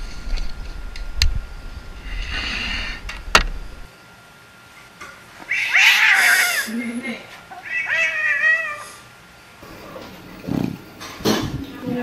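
A cat meowing: one long, loud meow around the middle, then a shorter second call about two seconds later. Before it, a low wind rumble on a microphone with a couple of sharp clicks.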